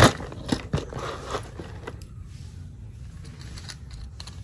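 Plastic and die-cast toy cars clicking and knocking against each other and the basin as they are picked through. The loudest knock comes right at the start, a few more follow in the first two seconds, and then only faint handling ticks.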